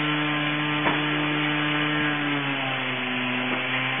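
A motor running steadily with a droning hum that drops slightly in pitch about two and a half seconds in.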